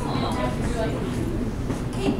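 Indistinct bar-room chatter: several voices talking over a steady low rumble of room noise.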